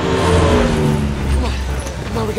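An engine passing by, its pitch falling steadily over about a second and a half.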